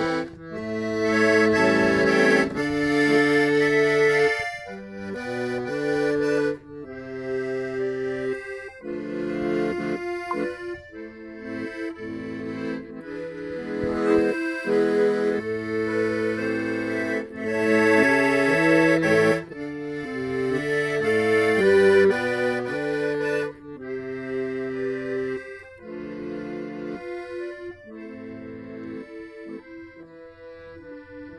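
Piano accordion playing a Russian folk tune: a melody over held chords, getting softer in the last several seconds.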